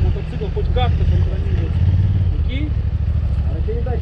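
Motorcycle engines idling, a low steady rumble that is a little stronger in the first two seconds.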